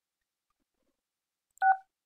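A single short telephone keypad (DTMF) tone for the digit 6, pressed on the Grandstream Wave softphone's dial pad, sounding about one and a half seconds in after near silence.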